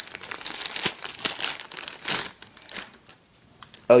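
Soft white protective wrap crinkling and rustling as it is pulled off a new camcorder: a busy run of rustles over the first two seconds or so, thinning to a few light crackles before it stops shortly before the end.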